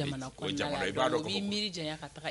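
Only speech: a person talking without pause.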